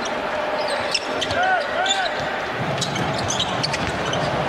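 A basketball dribbled on a hardwood arena court during live play, with short sharp sounds scattered over the steady noise of the crowd in a large hall.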